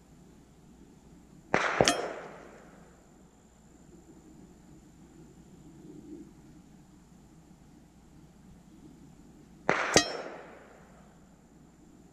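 Two .17 HMR bullets hitting a 20-inch steel gong about eight seconds apart; each hit is a sharp metallic clang with a quick double onset, ringing and fading over about a second.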